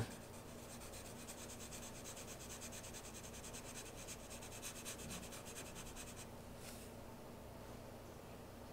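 Black Sharpie marker scribbling on card stock in quick back-and-forth strokes, colouring in a solid area. The scribbling stops about six seconds in, followed by one short stroke.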